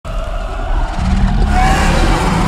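A black bear's loud, rough roar from a film soundtrack, growing heavier about a second in.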